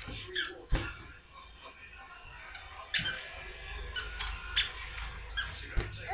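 Rubber balloons squeaking as small hands grab and rub them: short, high squeaks in two bunches, one at the start and a longer run from about halfway, with a couple of dull thumps of balloons knocking about.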